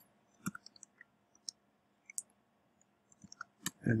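Keystrokes on a computer keyboard while code is typed: a sparse handful of faint clicks spread over a few seconds, with a quick cluster of several near the end.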